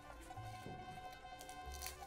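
Faint background music with steady held tones.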